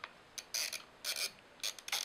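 Mechanical timer dial on a low-voltage landscape-lighting transformer being turned by hand, giving a run of short ratcheting clicks, irregular, roughly every half second, as it is set to on.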